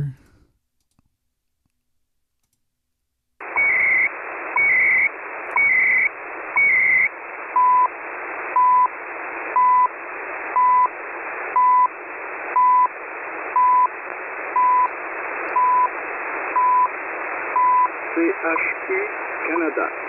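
CHU Canada shortwave time-signal broadcast received through a web SDR, with band-limited radio hiss. After about three seconds of silence the signal comes in: first a few second-marks carrying bursts of the station's time-code data tones, then a short plain beep every second. A spoken time announcement begins near the end.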